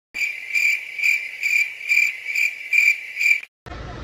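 Cricket chirping sound effect: a high, even chirp repeated about twice a second, eight times, cut in suddenly and cut off abruptly. It is the stock crickets gag used in comedy edits for an awkward silence.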